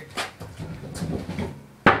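A stunt scooter knocking on a concrete floor: a few light clicks, then one sharp, loud knock near the end.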